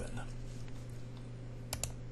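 Two quick clicks of a computer mouse close together near the end, over a faint steady electrical hum, as a move is entered on the chess software.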